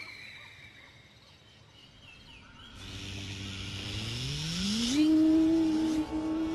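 A soundtrack sound effect. After a faint fading ring, a hissing whoosh swells up about three seconds in, with a low tone gliding upward beneath it. The whoosh cuts off about five seconds in, leaving a steady held synth note.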